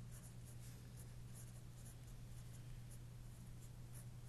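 Faint scratching of a pen writing on paper, in a run of short strokes, over a steady low hum.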